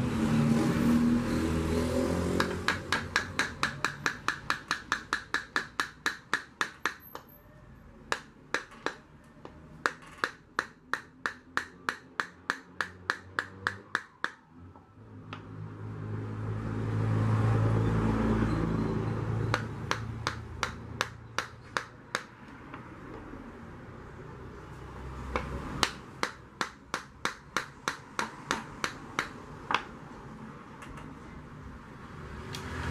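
Runs of quick, light hammer taps, about four a second, in several bursts with pauses between them, as a pressure-cooker part is worked on a bench. A low rumble swells and fades in the middle.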